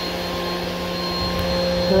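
A steady hum made of several held tones over a low, uneven rumble of wind on the microphone.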